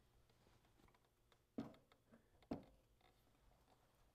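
Two short knocks about a second apart as the rack is set down onto the latches on the snowmobile's tunnel, with near silence around them.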